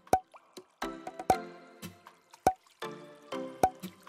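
Light background music: sustained chords with a sharp, clicking note about every second and a quarter.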